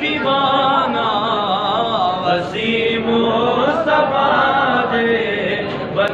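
Male voices chanting a Sindhi devotional naat refrain in a continuous, drawn-out melodic line.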